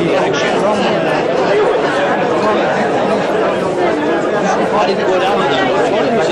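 Dinner-party crowd chatter: many people talking at once around the tables, a steady hubbub of overlapping conversations.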